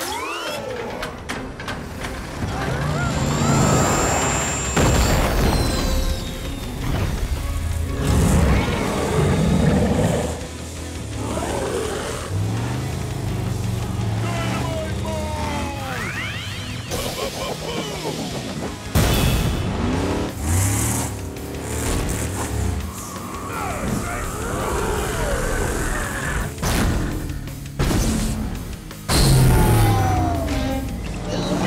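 Animated action-scene soundtrack: music mixed with sound effects of monster truck engines revving and impacts.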